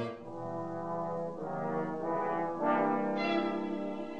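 Brass title music: held brass chords, with new chords swelling in about a second and a half in and again near three seconds in.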